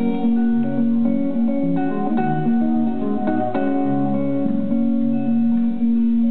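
Solo guitar played live, an instrumental passage of picked notes over a moving bass line between sung verses.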